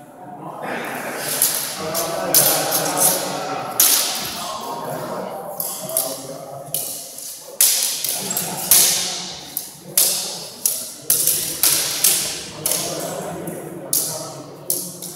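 Steel cut-and-thrust swords clashing during sparring. A dozen or more sharp clanks and knocks come at irregular intervals, coming thicker in the second half, with a short echo after each in a large hall.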